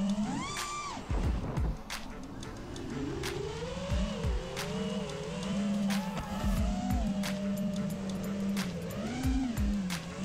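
Brushless motors of an iFlight DC5 FPV quadcopter on Gemfan Hurricane 51433 three-blade props, whining in a pitch that rises and falls as the throttle is worked constantly up and down, with a sharp climb in pitch about half a second in. Background music with a steady beat plays underneath.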